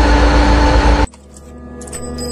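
Steady low rumbling noise inside a car cuts off abruptly about a second in; music with long held tones then comes in and slowly grows louder.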